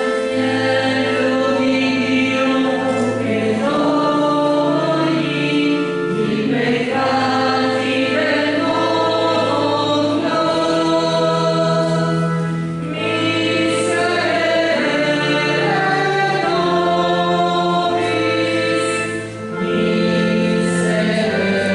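A church choir singing a slow liturgical hymn with sustained organ or keyboard chords underneath.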